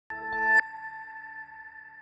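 Television news ident sting: a short electronic swell of tones rising for about half a second, then one bell-like tone ringing on and slowly fading.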